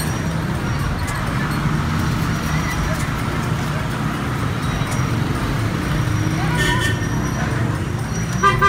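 Slow-moving motor traffic, a motorcycle and a dump truck crawling at low speed: a steady low engine hum under continuous street noise.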